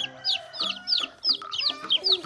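Young chicks peeping: a rapid run of short, high, downward-sliding peeps, several a second, over steady background music.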